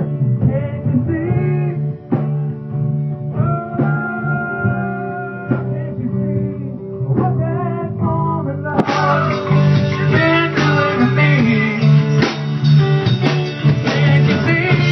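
Loud live blues-rock jam: electric guitar playing over a drum kit with a heavy low end. About nine seconds in the music gets fuller, brighter and a little louder.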